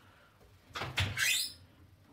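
A short scraping rustle of handling noise about a second in, lasting under a second and rising in pitch near its end, as the phone and the cloth around it are moved.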